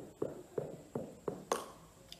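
A ping pong ball bouncing down carpeted stairs: about six light taps, roughly three a second, the last one sharper and brighter.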